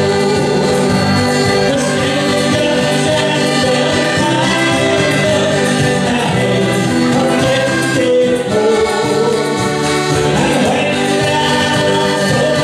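Live folk band playing a tune on two accordions, fiddle, acoustic guitar and a hand-held frame drum. The accordions' sustained chords fill the sound over a steady beat.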